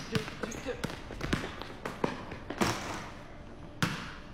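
A basketball being dribbled on a concrete warehouse floor: a run of sharp, unevenly spaced bounces, the strongest a little before three seconds in and near the end.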